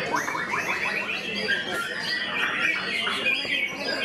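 White-rumped shama (murai batu) singing: a fast run of rising notes in the first second, then a stream of varied phrases, with voices in the background.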